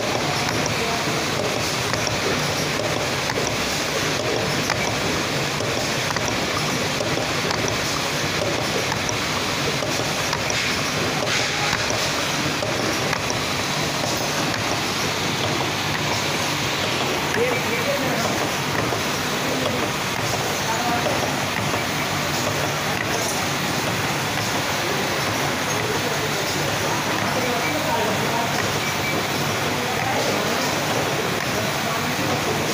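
Automatic eyedrop bottle packing line running: a continuous, even mechanical noise from the conveyor, vibratory bowl feeder and rotary plug-pressing station, with indistinct voices in the background.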